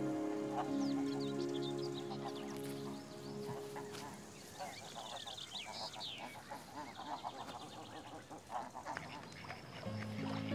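Soft background music fades out over the first few seconds, giving way to a flock of domestic ducks quacking and chattering busily, with small birds chirping higher up; the music comes back in right at the end.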